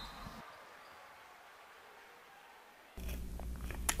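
Mostly dead silence at an edit between segments: faint noise fades out within the first half-second, and a faint, steady low hum of studio room tone begins about three seconds in.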